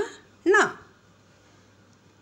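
Speech only: a voice reciting Malayalam consonants, saying a single syllable, 'ṇa', about half a second in, just after the end of the previous syllable. Otherwise quiet room tone with a faint low hum.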